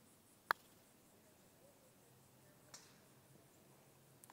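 A putter striking a golf ball once on a long putt: a single sharp click about half a second in.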